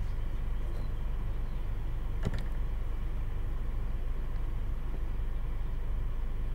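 Steady low background rumble at a constant level, with a single light click about two seconds in.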